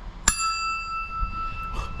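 A single bright ding: one sharp strike with a clear ringing tone that fades away over about a second and a half.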